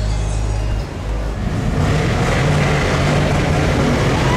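Pickup trucks driving by on a street: engine rumble and road noise, fuller and louder from about two seconds in.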